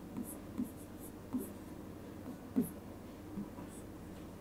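Pen writing numbers on an interactive whiteboard: a string of short, irregular soft taps and brief scratches as the strokes are drawn.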